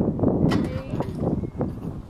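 A netball knocking against the hoop's metal ring and net and then being caught: a few sharp knocks over a rumbling background noise.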